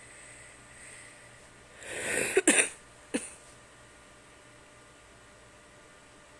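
A sleeping man making a throaty noise: a breathy rush about two seconds in that peaks in a sharp burst, then a second short burst about half a second later.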